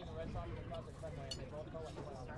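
Faint background chatter of ballpark spectators, several voices talking at once at low level, with two light clicks in the second half.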